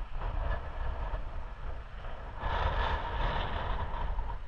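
Wind buffeting the microphone with a fluctuating low rumble. For over a second near the end it is joined by a louder rush of hiss.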